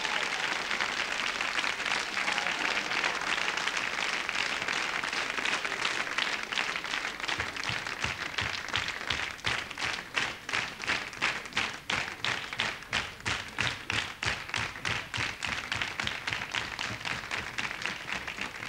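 Studio audience applauding, which settles about eight seconds in into rhythmic clapping in unison, about three claps a second.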